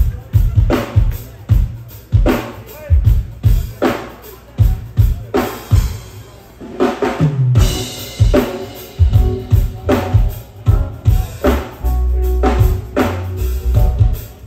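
Live reggae band in an instrumental passage led by the drum kit: kick drum and snare or rimshot hits keep a steady beat under the bass. A cymbal crash comes a little past halfway, and then sustained bass notes and sustained instrument tones join in.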